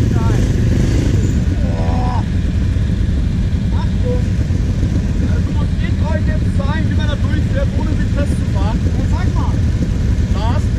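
Quad bike (ATV) engine idling steadily close by, with people talking in the background.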